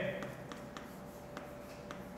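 Chalk writing on a chalkboard: a few faint taps and scratches as the letters are stroked out.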